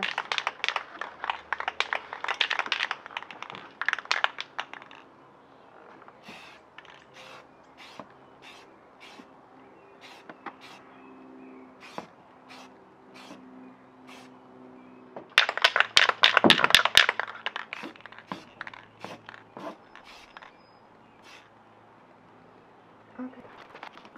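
Sheet of cardboard being handled and pressed against a van's rear door frame as a paint mask, crinkling and scraping with sharp clicks. It is busy for the first few seconds, then sparse, with a loud burst of handling noise about 15 seconds in.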